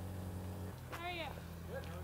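A steady low machine hum that shifts slightly in pitch about a third of the way in, with a man's short remark over it.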